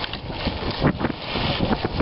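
Wind rumbling on the microphone, with a brief louder knock a little under a second in.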